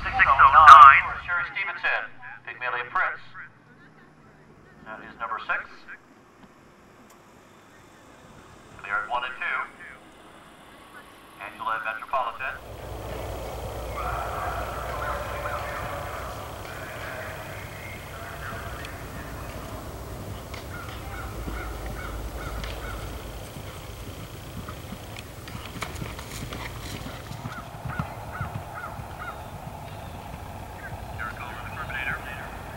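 Short, separate bursts of indistinct speech over an otherwise quiet background. From about twelve seconds in, this gives way suddenly to a steady outdoor background noise with a low rumble and faint voices.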